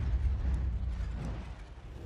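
A low rumble from a trailer's sound design, dying away steadily over two seconds.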